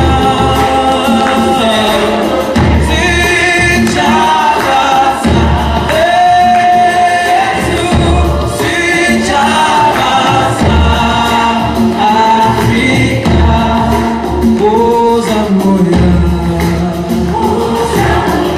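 Gospel music with choir-style group singing over a recurring bass beat.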